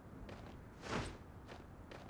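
Faint footsteps in a film soundtrack, with a brief louder rush of noise about a second in.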